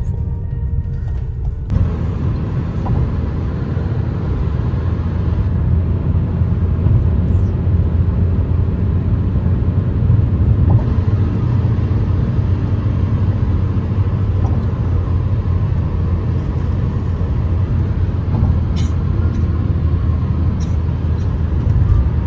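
Steady road and engine rumble inside the cabin of a diesel car driving at highway speed.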